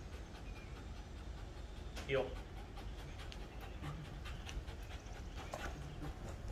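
A dog panting as it heels close beside its handler, with one spoken "heel" command about two seconds in, over a low steady background hum.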